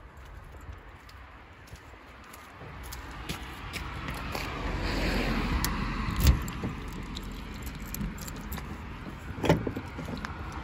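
A car passes on the road, its sound swelling over a couple of seconds and then easing off. A sharp click comes about six seconds in, and a short cluster of knocks near the end.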